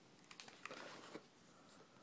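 Near silence, broken by a few faint, short clicks and rustles between about a third of a second and just over a second in: handling noise.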